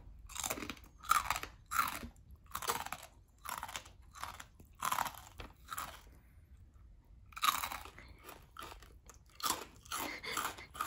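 Crisp okoge (scorched-rice) rice cracker being bitten and chewed close to the microphone: a sharp crunch about every half second to second, with a pause of about a second past the middle before the crunching starts again.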